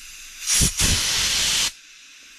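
Compressed air from a blow gun hissing through a piston oil spray nozzle for about a second, starting about half a second in and cutting off shortly before the end. The air blast checks that the nozzle's passage and jet holes are clear of debris.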